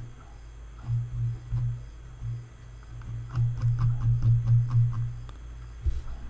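Computer mouse clicks and scroll-wheel ticks, with a quick run of small clicks in the second half. Under them runs a low droning hum that swells and fades.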